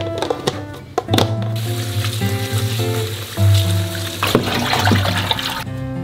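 Background music throughout. A tap runs water into a stainless-steel sink to rinse lettuce, starting about a second and a half in and stopping just before the end. A few sharp clicks near the start come as a plastic lid is pressed onto a stainless-steel tray.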